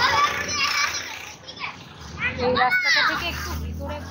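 Schoolchildren's voices shouting and chattering, high-pitched calls loudest near the start and again around three seconds in.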